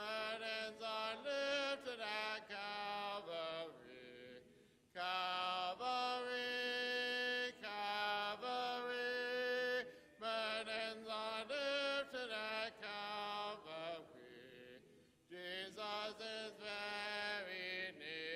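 Congregation singing a hymn a cappella, the invitation song of the service, in long held phrases with short breaks between them about four and fourteen seconds in.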